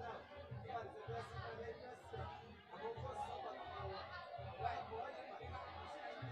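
Indistinct chatter of many voices echoing in a large hall, with several people talking at once and no single voice standing out.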